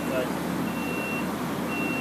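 An electronic warning beeper sounds a steady high beep about half a second long, once a second, three times. Under it runs the steady hum of a Heidelberg QM-DI offset press running under power.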